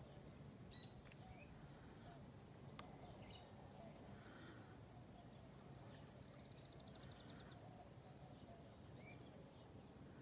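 Near silence: faint open-air ambience with a few faint, short bird chirps and, about six seconds in, a brief rapid trill of high ticks.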